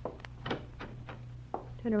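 Radio-drama sound effects: about six light knocks and clicks, irregularly spaced, as someone moves into a closet at gunpoint. A steady low hum from the old broadcast recording runs underneath.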